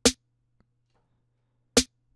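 Two hits of a programmed trap snare sample, one layer of a layered snare played back on its own. The hits are about 1.7 seconds apart, short and sharp, with a bright high end.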